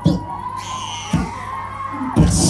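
A man preaching into a microphone over a PA system, in short forceful phrases starting about a tenth of a second and just over a second in, over a steady electrical hum and a thin constant tone.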